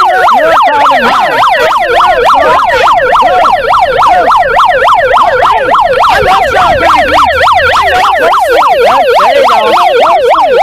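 Handheld megaphone's built-in siren sounding a fast, continuous yelp, about four to five up-and-down sweeps a second, very loud and close.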